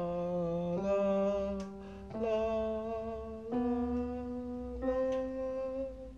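A man's voice singing a soft vocal scale exercise with digital piano notes, each note held about a second and a half and stepping up in pitch note by note.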